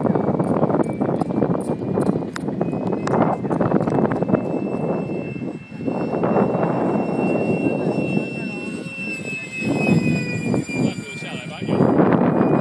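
E-flite Habu radio-controlled electric ducted-fan jet in flight: a steady high fan whine that drifts up slightly, then slides down in pitch about nine seconds in as the jet passes, over a rough, gusty rumble.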